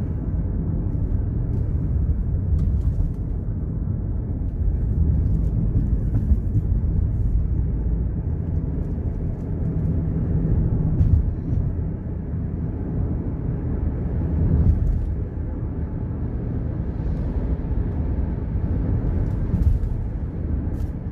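Steady low rumble of a moving car heard from inside the cabin, engine and tyre noise together, swelling briefly twice around the middle.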